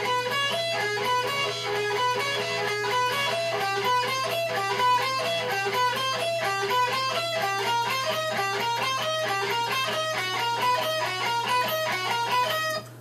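Electric guitar playing a finger-stretching exercise: a steady stream of single picked notes in a repeating pattern that works down and up across pairs of strings. A steady low hum sits underneath.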